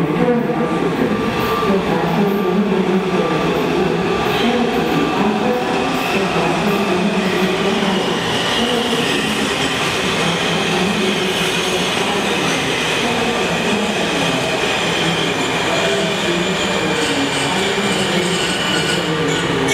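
Washington Metro subway train running into an underground station platform, a continuous loud rumble of wheels on rail. A steady high whine joins about halfway through.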